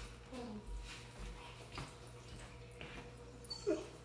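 A dog whimpering faintly: a few short whines that glide in pitch, among soft knocks.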